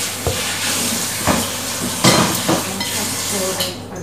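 Food sizzling as it fries in a pan on the stove, a steady hiss that fades near the end, with a few clinks and knocks of cutlery and dishes.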